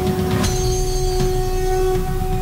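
Television news channel ident music: a held synthesized tone over a deep rumbling low end, with sharp hits about half a second in and again just past a second.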